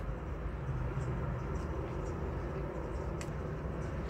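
Steady low rumble of background noise, with a few faint soft clicks.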